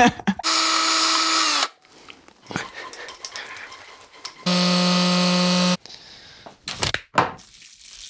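Two short bursts of a steady electric motor whine, like a power drill, each just over a second long and about four seconds apart; the first drops in pitch as it stops, the second is lower. Faint handling rustles between them.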